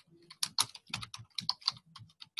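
Typing on a computer keyboard: a quick run of about a dozen keystrokes, picked up by a participant's microphone on a video call.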